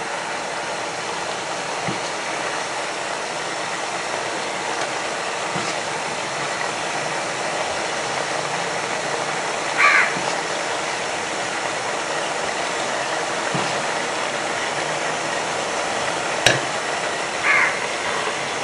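A steady, even hiss with no speech, with a brief brighter sound about ten seconds in and a sharp click near the end.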